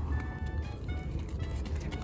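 Light background music of short, high, plinking notes over a steady low rumble.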